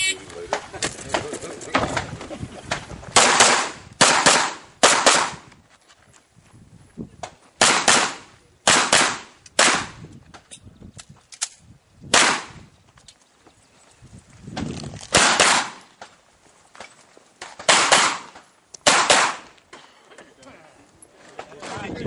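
A shot-timer beep, then a handgun fired about a dozen times in quick groups of one to four shots, with pauses between the groups as the shooter moves and reloads through a stage.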